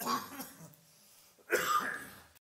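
Two short coughs, about a second and a half apart.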